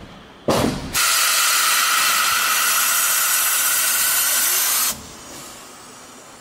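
Compressed air hissing on a Rhaetian Railway electric locomotive as its pantograph is raised. A short loud burst about half a second in is followed by a steady hiss that cuts off sharply about five seconds in.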